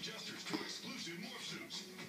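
A television playing: a voice over background music, like a commercial.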